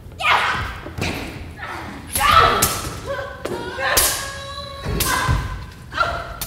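Stage sword fight on a wooden stage: a run of about five sharp clashes and thuds, roughly a second apart, some ringing on briefly, with wordless shouts from the fighters.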